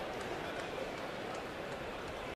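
Steady, low murmur of a ballpark crowd.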